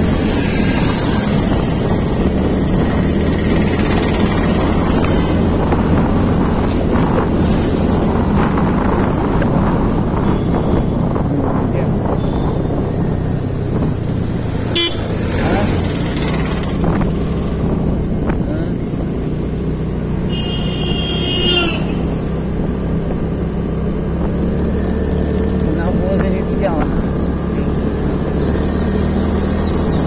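TVS Ntorq 125 scooter's single-cylinder engine running at town speed, with steady engine hum and road noise while riding. A vehicle horn sounds briefly, in a rapid warbling series, about twenty seconds in.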